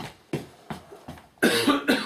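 A person coughing: a few short coughs, then a louder, longer cough about one and a half seconds in.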